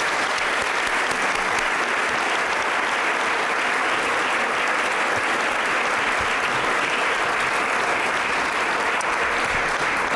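Audience applauding, a steady even clapping from a large seated crowd.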